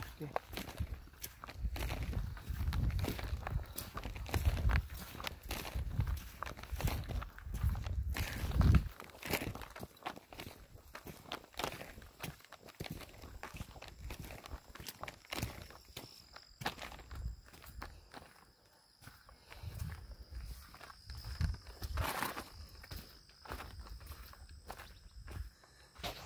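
Footsteps walking on a wet, muddy dirt road strewn with loose stones, an irregular run of steps and scuffs that is heavier in the first several seconds and lighter later.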